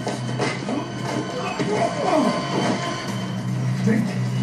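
Soundtrack of a television drama: background music under action sound effects and indistinct vocal sounds, with a steady low hum underneath.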